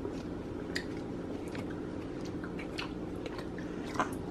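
Chewing of a gummy vitamin, with a few small mouth clicks scattered through, over a steady low hum.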